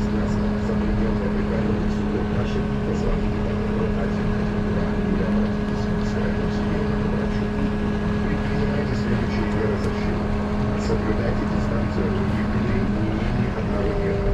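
Cab of a trolleybus driving through a flooded street: a steady electric drive hum under a broad wash of water and road noise from the wheels.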